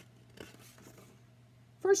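Soft paper rustling as a hardcover picture book is handled and its pages are turned, with a brief scuff about half a second in, over a faint low hum. A woman's reading voice begins near the end.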